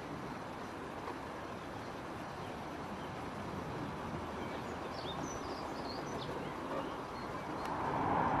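Steady outdoor background noise, an even hiss and rumble with no distinct source, with a few faint, high small-bird chirps about five seconds in.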